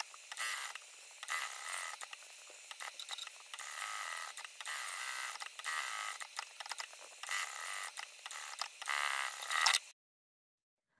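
Sewing machine stitching a pocket onto a cotton lining in short spurts with brief pauses, stopping and starting as the stitching line turns up and down along the pocket dividers. It cuts off suddenly just before the end.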